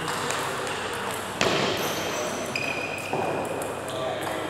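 A few sharp knocks of a table tennis ball, the loudest about a second and a half in, with a short high squeak a little later.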